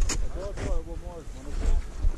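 Wind buffeting the camera microphone in a steady low rumble, with a person's voice heard through it from about half a second in until near the end.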